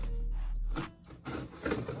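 Background music with a steady low bass that cuts out a little under a second in, followed by a few short scratchy strokes of scissors cutting through packing tape on a cardboard box.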